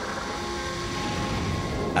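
A steady low rumbling drone with a few faint held tones over it, an even sound-design bed with no clear events.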